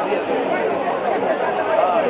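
Several people talking at once, their voices overlapping into steady chatter with no single voice standing out.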